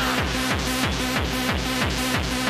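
Fast 1990s rave dance music from a DJ set: a steady kick drum at about three beats a second with synths over it.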